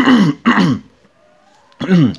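A man's voice makes a short vocal sound, then pauses for about a second before speaking again near the end.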